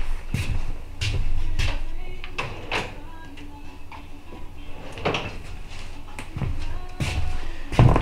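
Scattered knocks, clicks and clatter of tools and a drawer or cabinet being handled while calipers are fetched, over faint background music.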